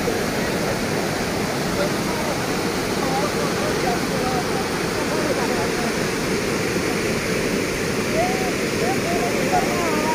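Floodwater rushing through a breached earthen river embankment, a steady turbulent churning of water pouring over the broken bank.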